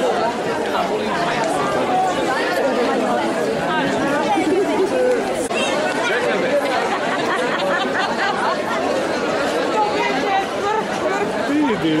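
Crowd chatter: many people talking at once at a steady level, with no single voice standing out.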